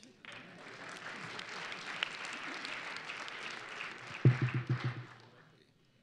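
Audience applauding for about five seconds, then dying away. About four seconds in, a man's low voice is briefly heard close to the microphone.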